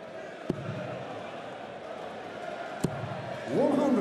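Two darts thudding into a bristle dartboard, sharp and short, a little over two seconds apart, over a steady murmur of a large crowd in a hall. Near the end, voices from the crowd swell with a rising and falling call.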